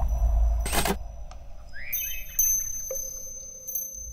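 Ambient soundscape from a short art film's soundtrack fading out: a low rumble dying away, a short whoosh under a second in, a few quick rising chirps around two seconds, and a steady tone holding in the last second.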